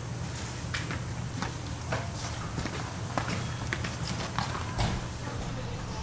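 Footsteps: sharp, irregular steps about twice a second, over a steady low hum.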